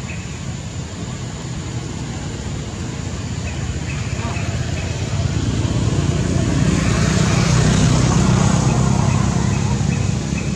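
A motor vehicle running nearby as a steady low rumble, growing louder to a peak about eight seconds in and easing a little after.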